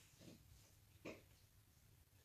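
Near silence: room tone, with two faint short puffs, a weak one just after the start and a stronger one about a second in.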